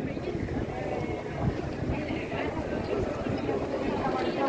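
Indistinct chatter of passers-by, no words made out, over a steady low rumble.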